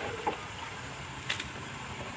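Low steady outdoor background noise, with a single faint click a little past the middle.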